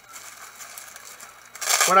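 Clear plastic wrapping crinkling as it is handled, faint at first, with a louder short rustle near the end.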